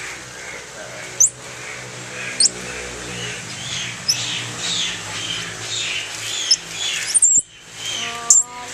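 Squirrel monkeys calling: a steady chatter of soft, high chirps, with about five sharp peeps that sweep steeply up in pitch standing out above it.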